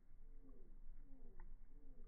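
A dove cooing faintly: three short coo notes, each dropping in pitch.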